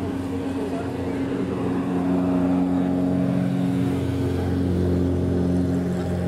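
An engine running at a steady pitch, growing louder about two seconds in, with voices in the background.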